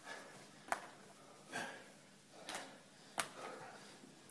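Heavy, effortful breathing of men working through kettlebell Turkish get-ups: a few loud exhales about a second apart. Two sharp knocks come through, one just under a second in and one a little past three seconds.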